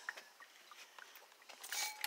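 Faint handling of a glass beaker: a few light clicks, then a short burst of rustling noise near the end.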